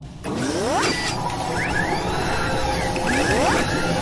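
Sound effects of an animated logo intro: a dense mechanical whirring and clatter with a rising whoosh three times over, starting suddenly.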